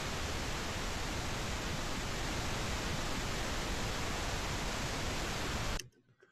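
Pink noise test signal played back from a Pro Tools track: a steady, even hiss, the constant source used for tuning a room. It cuts off suddenly near the end.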